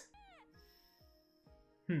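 A short, high-pitched, meow-like cry falling steeply in pitch just after the start, over faint background music. A brief hum of a voice comes at the very end.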